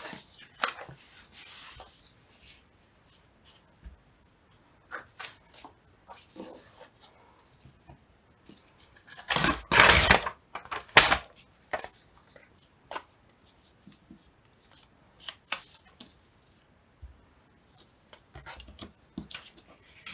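Paper being torn along a ruler's edge: a long rip about halfway through, the loudest sound, and a shorter one a second later, among light rustles and taps of paper and ruler on the cutting mat.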